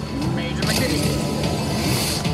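Grand Star video slot machine playing its free-game bonus music, with sound effects as coin-pot symbols land and burst; a bright hiss-like effect joins about half a second in.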